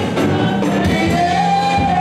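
Gospel worship singing by a group of singers over a band with drum kit and bass; about halfway through, one voice holds a long note.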